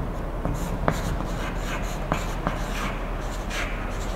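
Chalk writing on a blackboard: a run of short scratching strokes, with sharp ticks where the chalk strikes the board.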